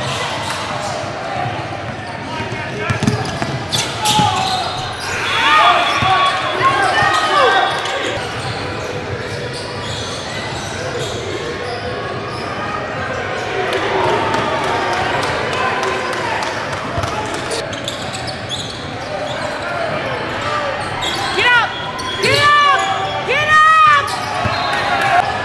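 Basketball being dribbled on a hardwood court, with sneakers squeaking and a burst of several squeaks near the end, over the chatter of spectators in a large, echoing gym.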